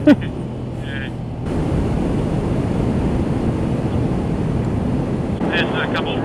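Motorcycle cruising at road speed: a steady low engine hum under wind rushing over the helmet-mounted microphone. The wind grows louder about a second and a half in and then holds.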